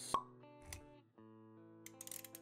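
Intro-jingle music with held notes, punctuated by a sharp pop sound effect just after the start and a second, lower thump a little before the middle.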